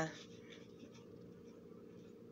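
Faint rustling of a paper pamphlet being handled, over a steady low hum.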